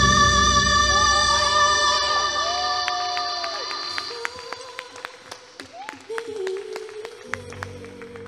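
Female vocalist singing live into a microphone over a sustained backing chord, the music fading away over several seconds as the song ends. A few scattered hand claps come in the second half.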